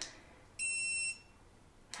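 Luoymbe dog training collar sounding its beep mode: a single steady, high-pitched electronic beep about half a second long, starting about half a second in.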